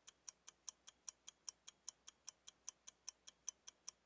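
Faint ticking-clock sound effect, about five even ticks a second, counting down the time to guess a fill-in-the-blank quiz answer.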